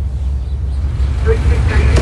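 A steady, loud low rumble, with faint indistinct voices in the background from about a second in.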